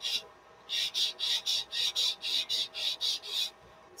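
A tightly rolled paper-towel blending stump rubbing over pencil graphite on drawing paper in quick, short back-and-forth strokes, about four a second, blending the drawn lines. The strokes start about a second in and stop shortly before the end.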